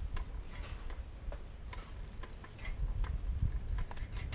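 Irregular light clicks, a few a second, over a low rumble of wind and movement on the microphone.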